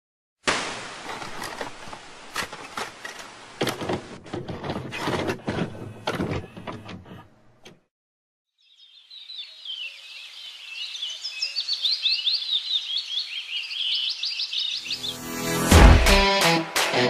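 Crackling TV-static hiss full of clicks for about seven seconds, stopping suddenly. After a brief silence, birds chirp and twitter, growing louder, and music with a deep thud comes in near the end.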